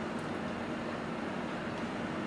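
Steady low hiss and hum with no distinct knocks or clinks.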